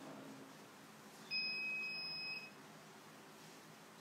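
A single steady electronic beep, about a second long, starting a little over a second in, over faint room tone.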